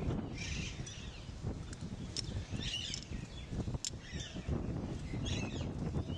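Birds chirping in short, scattered bursts of calls over a steady low rumble, with a few sharp clicks.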